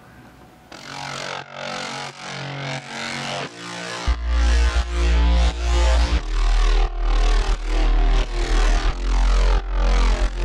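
Electronic dance track played back from the production project: pulsing synth chords build and grow louder, then about four seconds in a heavy sub-bass comes in. The bassline is played on the Massive software synthesizer.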